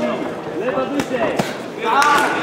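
Boxing gloves landing punches, two sharp smacks about a second in, amid shouting voices from around the ring.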